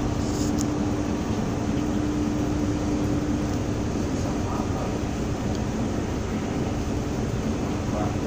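Steady drone of a small tanker under way: a constant engine hum over the rush of wind and sea.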